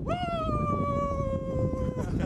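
A person's long, held, high-pitched shout or hoot that lasts about two seconds and sinks slightly in pitch, over wind rumble on the microphone.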